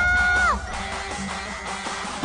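Live J-pop idol group performance. A female singer holds a long note over the band, and it falls away about half a second in. The music then drops to a quieter passage without the heavy beat.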